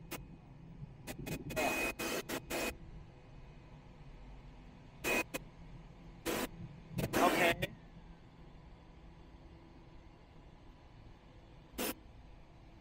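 Steady low hum of running plant machinery on a plastic cap production line, broken by several short sounds, some of them brief voices.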